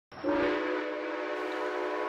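A train's horn sounding one long, steady chord of several notes, starting just after the beginning, over the faint running noise of the train.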